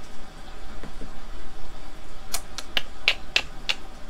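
A quick run of about six sharp clicks, a few tenths of a second apart, over a low steady room hum.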